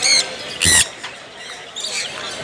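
Sun conures squawking: two harsh shrieks about half a second apart, the second the louder.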